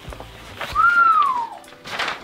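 A single short whistle, a note that rises briefly and then glides down in pitch over about a second, like an admiring whistle.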